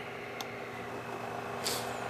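Kodak slide projector's cooling fan running with a steady hum. There is a faint click about half a second in and a short rustle of handling near the end.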